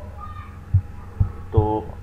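A steady low hum with soft, low thumps recurring about every half second, and one short spoken word about halfway through.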